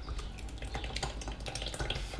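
Macerated herb oil poured from a glass jar through a cloth-lined strainer into a plastic jug, a steady trickle with small drips.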